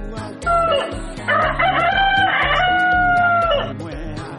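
Rooster crowing over a music bed with a steady beat: a short call about half a second in, then one long crow held for over two seconds that drops in pitch at the end.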